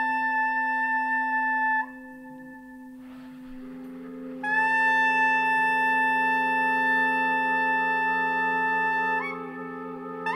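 Soprano saxophone holding long, steady high notes over a low drone. The first note breaks off about two seconds in, and after a quieter stretch a second long note starts near the middle and steps up shortly before the end.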